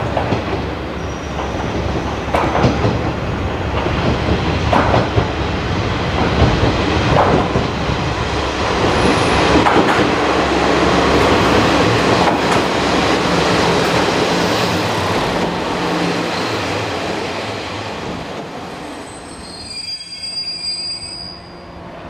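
JR Kyushu KiHa 47-series diesel railcars pulling into a station at low speed: diesel engine running and wheels knocking over rail joints every couple of seconds, loudest as the cars pass close by. Near the end a high brake squeal as the train comes to a stop.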